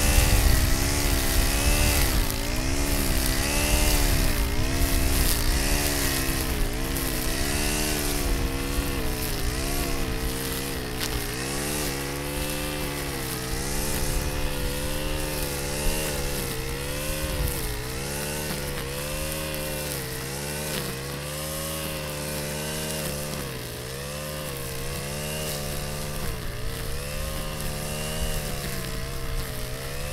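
Stihl FS 90R string trimmer's 4-MIX engine running at high revs, spinning .105 trimmer line through tall dry grass. The engine pitch dips and recovers every second or two as the line cuts into the grass.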